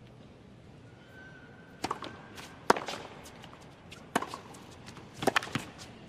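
A tennis ball making sharp knocks, bouncing on the hard court and struck by racket: single knocks a second or so apart, the loudest near the middle, then three in quick succession near the end.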